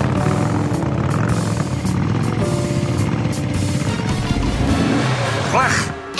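Cartoon sound effect of a vehicle's engine running steadily and low, over background music.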